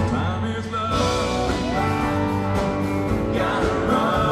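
Live country band playing, with a male lead vocal over strummed acoustic guitar and drums.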